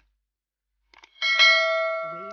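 Subscribe-button animation sound effect: after about a second of dead silence, a faint mouse click and then a bell chime, ringing in several steady tones and fading slowly.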